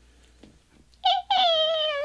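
A woman's high-pitched, drawn-out 'oooh' call starting about halfway in, held for about a second and gliding slightly down in pitch.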